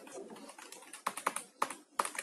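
A few light, sharp clicks of computer keys, about five in the second half, as the on-screen handwritten equation is being edited.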